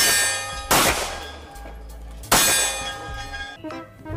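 Three loud metallic clangs: one at the start, one less than a second later, and one a little past two seconds in. Each is struck sharply and rings out with a bell-like tone that fades over about a second.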